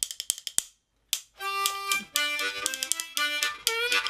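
A pair of rhythm bones clacking in a quick rattle, a short pause, then a C harmonica starting a bluegrass melody about a second and a half in, with the bones still clacking along in time.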